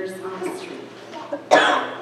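A single loud, short cough about one and a half seconds in, picked up close to the pulpit microphone.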